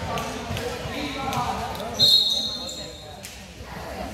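A referee's whistle blown once about halfway through: a single steady shrill blast lasting about a second. Spectator chatter can be heard before it.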